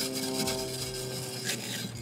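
A brush scraping and rubbing buildup out of a grill's pellet box, in a run of quick strokes, with faint steady tones underneath.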